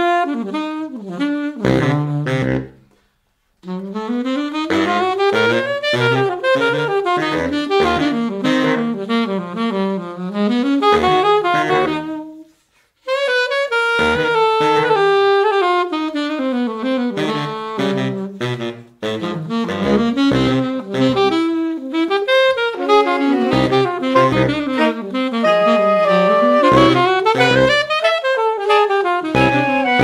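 Alto and baritone saxophones playing a rhythmic jazz passage together, the baritone's low notes under the alto's line. The music stops short twice, about three seconds in and about twelve seconds in, then starts again.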